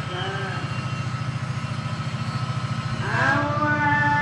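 EMD 8-710G two-stroke diesel engine of a GT38ACe locomotive working at full notch, a steady low throbbing pulse. About three seconds in, a higher wavering tone rises and holds over it.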